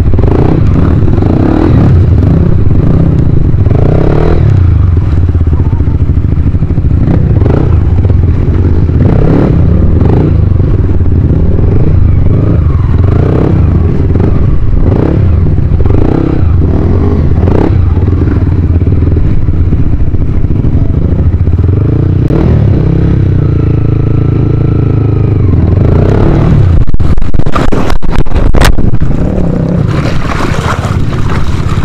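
Yamaha WR155R dirt bike's single-cylinder engine running at low speed through a shallow rocky river, with stones clattering and water splashing. Near the end it gets louder, with a quick series of sharp knocks.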